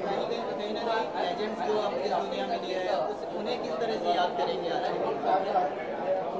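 Indistinct chatter of many people talking at once in a large room, a steady hubbub of overlapping voices.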